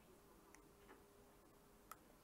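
Near silence: room tone with a faint steady hum and three faint, short clicks.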